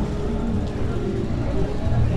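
Street sound of a pedestrian walkway: a steady low rumble with people's voices and music.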